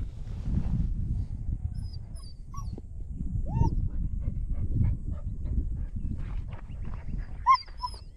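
Nine-week-old German shepherd puppy giving a few short, high-pitched cries. The loudest comes near the end, over a steady low rumble.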